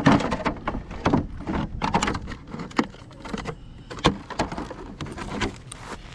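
Irregular clicks, knocks and rustling from a hand handling a Traxxas X-Maxx RC monster truck.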